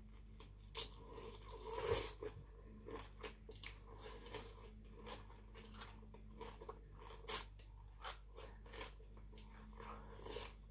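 Close-up eating sounds: khanom jeen rice noodles being slurped and chewed, with many short wet mouth clicks and smacks. A longer, louder slurp comes about two seconds in.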